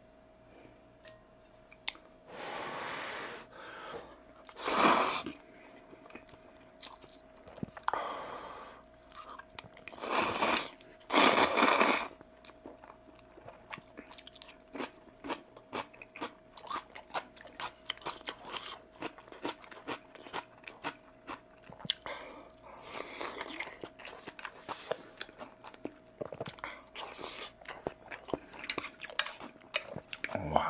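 A person slurping ramen noodles loudly, several slurps in the first twelve seconds, then close-miked chewing with many small wet clicks and crunches. A faint steady hum sits underneath.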